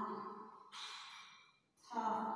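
A woman's voice sounding out a Hindi consonant syllable, trailing off, then a breathy outward puff of air about two-thirds of a second in. Her voice starts again near the end.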